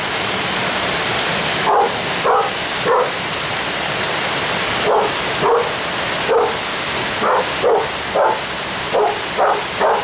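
A dog barking about ten times in short single barks, spaced irregularly and in clusters of two or three, over the steady rush of a small waterfall.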